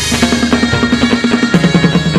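Chầu văn ritual music played live: a drum keeps a fast, steady beat of about six to seven strokes a second under the plucked notes of a đàn nguyệt moon lute, with the melody stepping down in pitch about one and a half seconds in.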